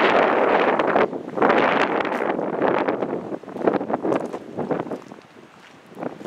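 Wind buffeting the microphone in gusts, loudest in the first few seconds and dying away near the end.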